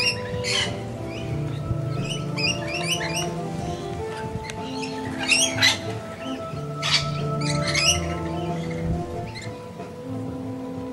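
Background music with long held notes, over which a feeding flock of rainbow lorikeets gives short, high-pitched screeching calls every second or two, the loudest about five and a half seconds in.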